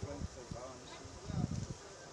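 Large outdoor crowd murmuring, with scattered voices, and a brief low rumble a little after halfway through.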